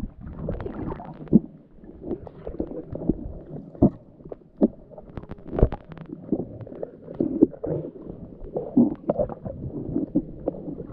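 Muffled underwater sound picked up by a submerged camera: low gurgling and bubbling of moving water, broken by several sharp knocks at irregular intervals.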